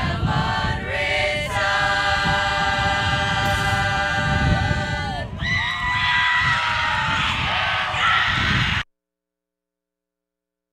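Mixed high school choir singing held chords, with some voices sliding in pitch about halfway through. The sound cuts off abruptly about nine seconds in, leaving dead silence where the stream's audio drops out.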